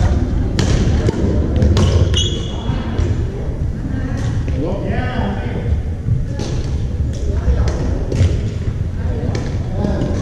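Badminton rally on an indoor court: sharp racket strikes on the shuttlecock every second or two, echoing in a large gymnasium hall, with voices in the background.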